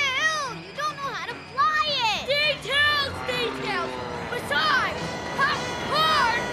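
Cartoon voices, including children's, shrieking and wailing in a run of short cries that swoop up and down in pitch, over background music.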